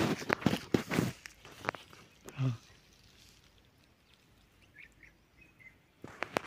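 Crunching, rustling footsteps on a gravelly dirt bank in the first second or so. About two and a half seconds in there is a short low grunt, and after that only faint outdoor background.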